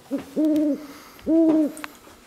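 A man's voice making two drawn-out, hooting "hoo" sounds about a second apart, after a short blip.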